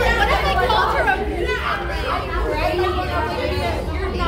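Several young women chatting and talking over one another, with a steady low hum underneath.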